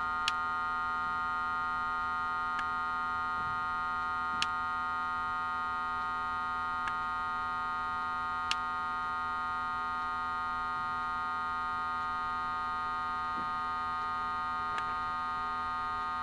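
A steady electronic hum made of several fixed tones blended together, with a handful of faint sharp clicks scattered through it.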